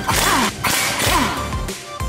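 Background electronic music with a steady beat and swooshing sweep effects.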